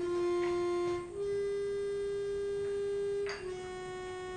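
Audio played back from Audacity through the room's speakers: a short run of held, buzzy tones rich in overtones, starting abruptly and stepping to a new pitch about a second in and again a little after three seconds in.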